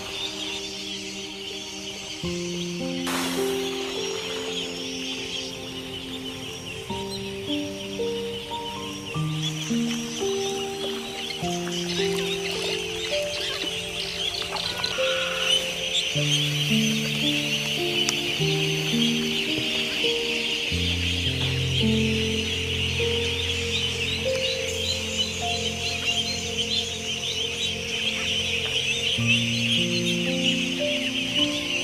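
Slow background music of held notes, a deep bass note coming in about two-thirds of the way through, over the dense, unbroken peeping of a large flock of young ducklings crowding round feed.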